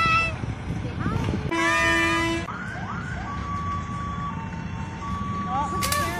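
Parade vehicles driving past with a steady engine and road rumble. A vehicle horn sounds one steady honk lasting about a second, a couple of seconds in, after a short wavering whoop at the very start.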